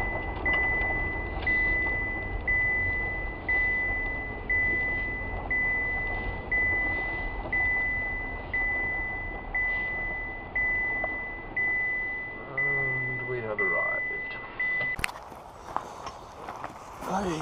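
A car's electronic warning chime beeping steadily about once a second, each beep fading before the next, over the low hum of the car. The hum drops away a few seconds before the beeping stops.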